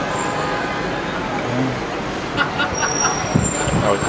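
Steady background din of road traffic and a busy room, with faint indistinct voices and a few light knocks in the second half.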